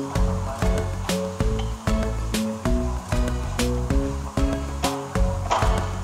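Background music with a steady beat and a repeating melody.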